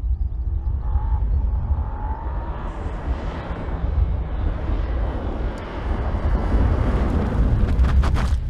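Porsche Panamera E-Hybrid driven hard through a cone slalom and passing close by, its engine and tyre noise building as it approaches over a steady low rumble. There are a few sharp clicks near the end.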